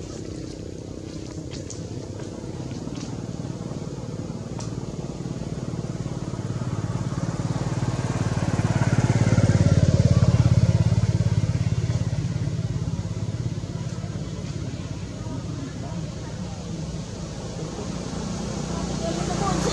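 An engine running steadily, growing louder to a peak about halfway through and then fading, as a vehicle passing by.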